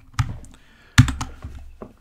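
A few separate keystrokes on a computer keyboard, the loudest about a second in.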